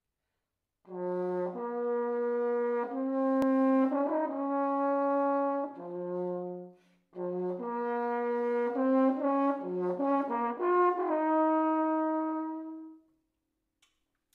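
French horn played solo: a short unaccompanied melody of clear, separate notes in two phrases with a brief break between them, the second phrase ending on a long held note.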